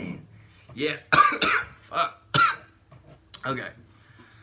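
A man coughing in a series of short, hard coughs, about six in all, bunched together in the first half and one more near the end.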